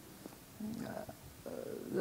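A man's faint, low hesitant murmur, twice, in a pause between words.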